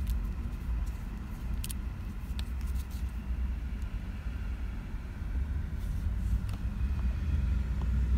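Steady low rumble inside a car's cabin, with a few faint clicks from a plastic action figure and its clear plastic tray being handled.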